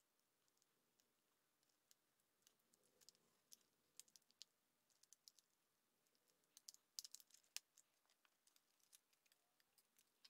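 Faint, scattered clicks and crackles of a clear plastic blister pack being worked loose from its card to free a diecast toy car, thickest around seven seconds in.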